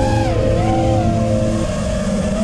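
Brushless motors of an FPV racing quadcopter whining, several tones at once that rise and fall in pitch as the throttle changes.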